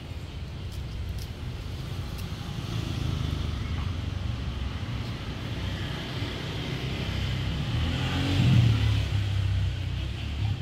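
Low rumble of a motor vehicle, growing louder to a peak about eight and a half seconds in, then easing off.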